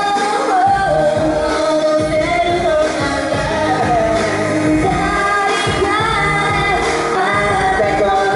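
Live pop song: a woman sings a melody into a microphone over an amplified backing track with a steady beat.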